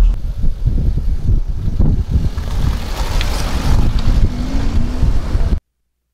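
Rumbling wind noise on the microphone over street traffic sound, which cuts off abruptly about five and a half seconds in.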